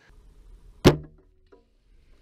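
A single sharp, loud hit a little before the middle, with a short low hum dying away after it.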